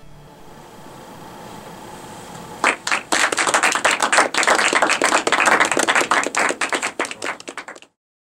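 Faint room tone, then an audience clapping from about two and a half seconds in, the applause cutting off suddenly just before the end.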